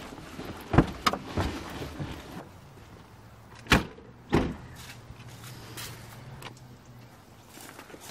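Doors of a Jeep Wrangler opened and shut as the occupants get out: a few latch clicks and knocks about a second in, then two loud door slams a little over half a second apart just before the middle, followed by a faint low hum.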